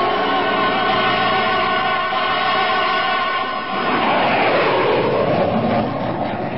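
Radio-drama sound effect of an aeroplane's engines: a steady drone of several tones, giving way about four seconds in to a rushing roar that swells and sweeps in pitch.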